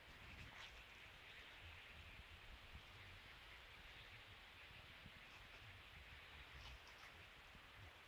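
Near silence: faint woodland ambience with a low rumble and a few faint rustles.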